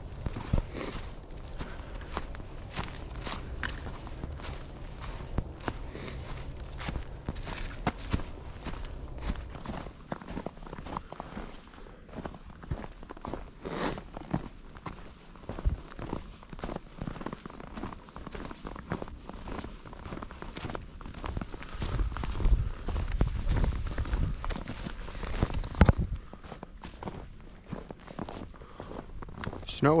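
A hiker's footsteps, walking steadily at about one to two steps a second along a trail of leaf litter and fresh snow. A few seconds of low rumble come in about three quarters of the way through.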